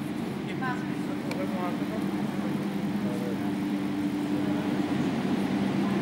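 Indistinct chatter of people's voices in a large hall, over a steady low hum.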